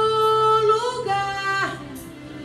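Women's choir singing a hymn in Portuguese, holding a long sustained note that shifts pitch slightly before falling away about a second and a half in.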